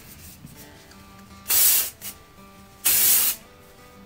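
Two short bursts from an Authentic Beauty Concept Glow Touch hair spray can, each about half a second long and a little over a second apart, over quiet background music.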